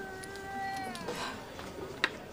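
A long, high wailing cry held on one steady pitch, then sliding down and stopping a little after a second in.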